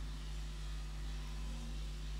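Steady low hum with an even hiss underneath, the background noise of a microphone and sound system in a pause between words.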